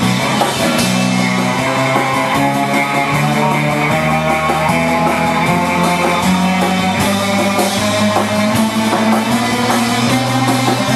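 Live rock band playing loudly, with electric guitars strummed and picked over a steady bass line.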